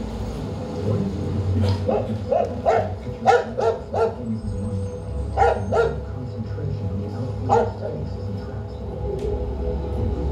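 Played-back sound piece from a savanna field recording: a dog barks in short bursts over a steady low hum. There is a quick run of barks in the first half, then a pair, then one more.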